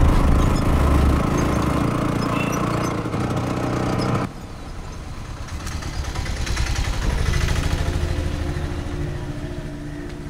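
Auto-rickshaw engine running as the three-wheeler drives along a street, cut off abruptly about four seconds in. A quieter engine hum follows, rising for a couple of seconds and then fading.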